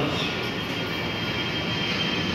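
Steady rushing background noise with a thin, high, steady whine running through it, in a pause between spoken phrases.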